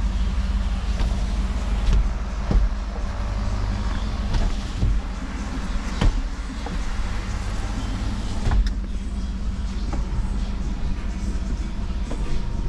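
A steady low mechanical hum, with a few sharp knocks and clicks, the loudest about six seconds in.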